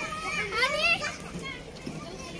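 Children's high voices calling and chattering at play, mostly in the first second and then fainter.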